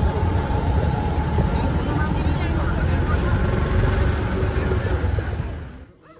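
Busy street ambience: a steady low rumble of traffic mixed with the chatter of passers-by. It cuts off abruptly near the end.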